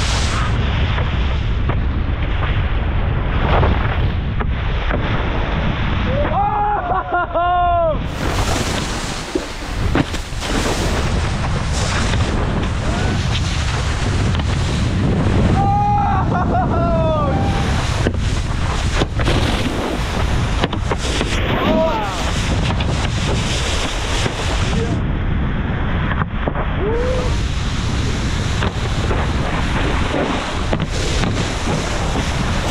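Wind buffeting a small action-camera microphone and water rushing and spraying as wakeboards carve across the lake, in a loud, steady wash of noise that changes sharply at shot cuts. A few short yells rise and fall over it.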